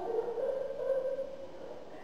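A faint drawn-out voice holding one note that rises slightly, then fades out after about a second.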